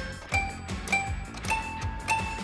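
Notes struck one at a time on a Schoenhut toy piano, each ringing with a bell-like tone, about one every half second or so, over background music with a steady beat.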